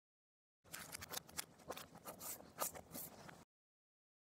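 Clear plastic tubing being handled on a cutting mat: about three seconds of light, irregular clicks and scrapes that start and stop abruptly.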